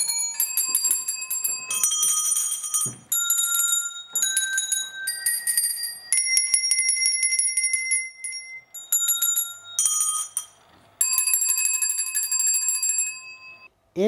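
A set of tuned metal handbells rung one after another by shaking, the clappers striking rapidly so each note shimmers. About nine notes step up in pitch to a long held high note around the middle, then come back down to a long low note near the end, each one cut off sharply before the next.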